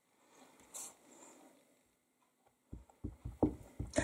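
Clear acrylic stamp block being tapped repeatedly onto an ink pad to ink the stamp: a quick run of soft, low taps in the last second or so, after a faint brief rustle about a second in.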